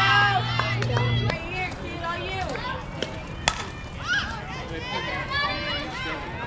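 Spectators and players yelling and cheering during a softball play, with many high-pitched voices that are loudest in the first second and rise again near the end. A low steady hum cuts off about a second in, and a few sharp knocks sound, the loudest about halfway through.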